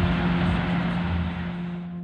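Car cabin noise mixed with background music, with a steady low hum underneath, fading out toward the end.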